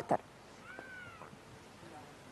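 A single faint, short animal-like call about half a second in, its pitch rising and then falling, over a low background hiss.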